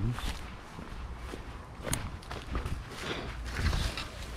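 Footsteps of a person walking across paver stones and stepping into dry leaf litter and mulch, with scuffing and rustling underfoot and a sharp click about two seconds in.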